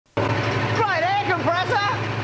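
A two-horsepower direct-drive air compressor running with a steady low hum and noise that starts abruptly just after the start, loud enough to need earmuffs; a voice comes in over it about halfway through.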